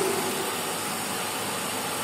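Hydraulic pumping unit of a 2000 kN compression testing machine running steadily while it applies load to a concrete cube, a steady, even machine noise.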